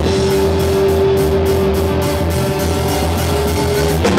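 Punk rock band playing loud live: distorted electric guitar and drum kit, with one long held note that runs through the whole stretch and no vocals.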